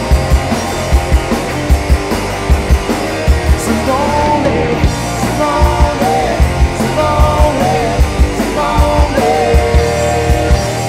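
Live rock band playing an instrumental passage: an electric guitar plays a melodic lead with sliding notes over bass and a steady, regular kick-drum beat.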